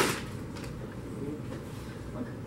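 A brief loud noise right at the start, then quiet room tone with faint, distant speech.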